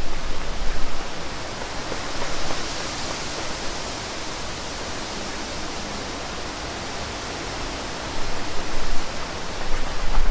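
Wind on the microphone: a steady rushing hiss, with gusts buffeting the microphone and rumbling near the start and again near the end.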